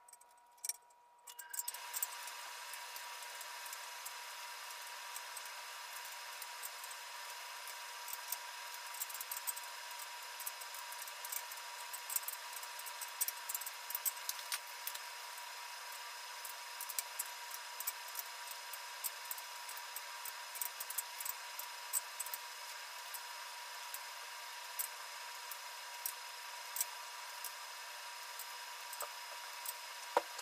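Long-handled ratchet wrench clicking in short irregular runs, with metal tool clinks, as the camshaft cap bolts on a cylinder head are tightened. Behind it sits a steady hiss with a thin high tone, starting about a second and a half in.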